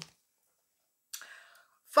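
Mostly dead silence, broken about a second in by a brief, faint, breathy whisper from a woman's voice; her speech picks up again at the very end.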